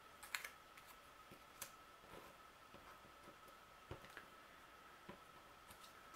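Near silence with a few faint, scattered taps and clicks of small punched paper petals being picked up, pinched and set down on a cutting mat.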